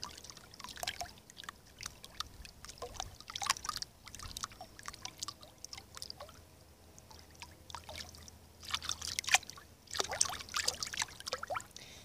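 Feet kicking and splashing in swimming-pool water: irregular splashes and drips, with the busiest splashing near the end.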